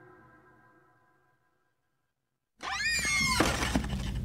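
Audio-drama sound design: a held musical tone fades out into dead silence, then about two and a half seconds in a sound effect cuts in abruptly, with high pitched glides that arc up and fall away over a steady low rumble.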